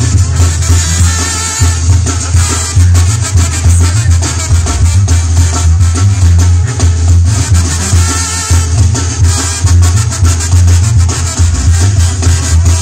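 A live banda sinaloense playing a medley of sones: sousaphone bass line, trumpets and trombones, with congas and drum kit. Loud, with a heavy amplified bass.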